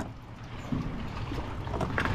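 Wind rumbling on the microphone over faint water movement beside a kayak hull, with a sharp click at the very end.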